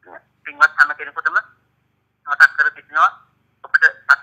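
Speech: a man talking over a telephone line in short phrases with brief pauses.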